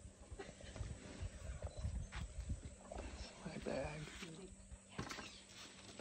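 African bull elephant at very close range, low irregular rumbling noises as it steps in and pushes its trunk into a camera backpack, with a couple of brief sharper rustles from the trunk at the bag.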